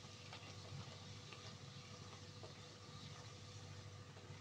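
Faint sizzling and light crackling of a disc of rolled dough deep-frying in hot oil, over a low steady hum.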